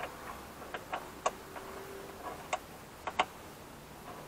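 Half a dozen irregular sharp metallic clicks from a long Torx key being worked in the lock screws on the end of a car's rear door, the key tapping and clicking against the screw heads as it turns.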